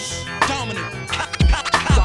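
Hip hop beat with turntable scratching: short back-and-forth scratched glides over heavy kick drums, with two kicks close together in the second half.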